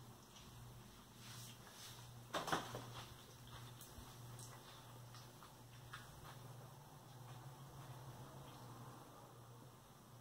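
Faint close-up eating sounds: a man chewing a bite of chili cheeseburger topped with corn chips, with soft wet clicks and one louder crackle about two and a half seconds in, over a steady low hum.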